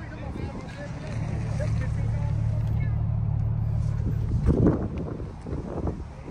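A car engine running nearby with a steady low hum that grows gradually louder, then a short louder burst of noise about four and a half seconds in. Faint voices are in the background.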